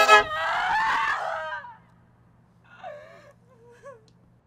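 A wavering, falling scream that fades out within about a second and a half. Near the end come two short crow caws over a faint low hum.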